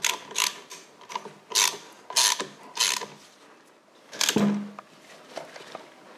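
Socket ratchet turning the forcing screw of a motorcycle chain splitter and riveter tool, with short bursts of ratchet clicks about every half second. About four seconds in there is a louder, lower creak from the tool.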